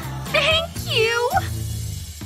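Two high, wordless vocal sounds from a woman, delighted coos that glide up and down, about half a second and a second in, over background music with a steady bass line.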